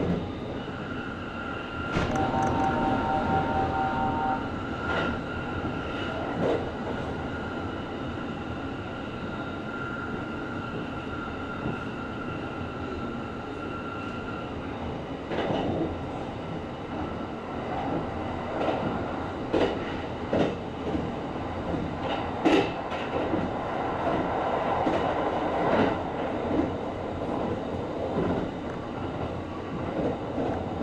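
Running noise of a Kintetsu Series 23000 Ise-Shima Liner electric express, heard from inside the train: a steady rumble with a high steady whine through the first half. About two seconds in there is a brief two-tone ringing. From about halfway the wheels click sharply and irregularly over the rail joints.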